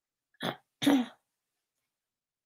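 A woman clears her throat in two short bursts, the second louder.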